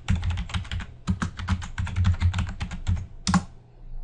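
Typing on a computer keyboard: a quick run of keystrokes for about three and a half seconds, with one louder keystroke near the end.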